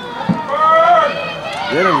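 A person's loud, drawn-out, high-pitched shout during a football play, followed by a short spoken word.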